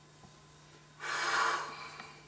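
A young woman's loud, breathy sob, a single gasping cry of about a second starting about a second in.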